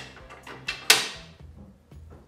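Sharp metal clicks and a louder clank with a short ring about a second in, as collar pins are pushed into the steel handle tube of a utility cart.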